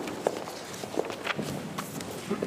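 Shuffling feet, rustling music folders and scattered small knocks as a standing choir settles into place before singing, over the steady hiss of room noise.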